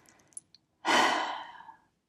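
One audible breath from a woman, a sigh-like breath starting about a second in and fading away over most of a second, with a faint click just before it.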